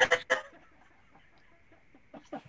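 A person laughing in a few short bursts about half a second long, then faint room tone.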